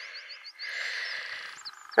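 A small bird chirping: a quick run of short high chirps, then two or three more near the end, over a soft steady hiss.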